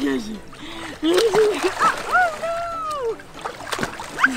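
A baby slapping and kicking shallow seawater, with splashes, under wordless happy vocal squeals and coos, one high squeal held for about a second in the middle.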